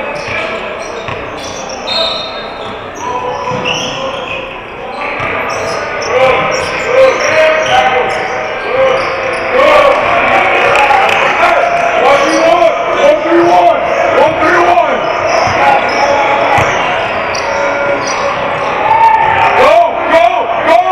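Basketballs bouncing on the hardwood floor of a gym, with many short knocks and indistinct voices around them.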